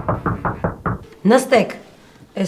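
Rapid knocking: about eight quick knocks within a second, growing fainter.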